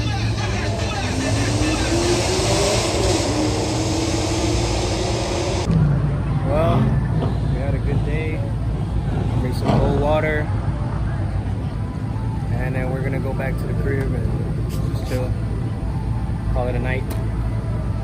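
A car engine under hard acceleration, its note rising steadily for about four seconds as it makes a pass, then cut off abruptly. After that come people's voices over a steady low drone.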